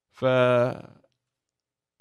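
A man's voice holding one drawn-out vowel sound, steady in pitch, for under a second, a wordless filler between sentences.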